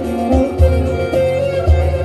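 Bağlama (long-necked Turkish saz) playing an instrumental folk melody over a backing with a low, regular bass beat.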